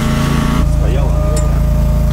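A truck's diesel engine idling steadily, with people talking faintly in the background. The sound changes abruptly about half a second in.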